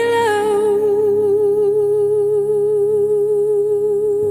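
A female singer holds one long note with a slow, even vibrato over soft instrumental backing in a pop love-song cover.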